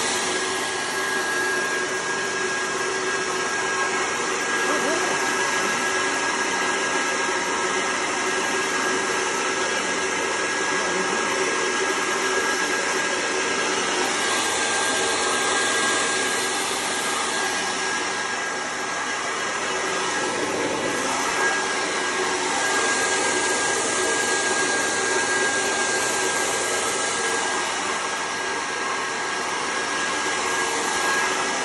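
Mini wheat-cleaning machine running steadily: its electric motor and fan give a constant whine over a hiss as wheat grain runs down the perforated sieve chute.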